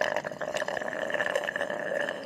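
Aerosol spray-paint can hissing in one steady spray, as a sound effect.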